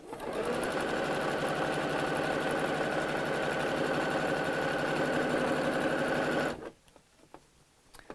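Pfaff electric sewing machine stitching through layers of burlap, running at a steady speed for about six and a half seconds and then stopping abruptly.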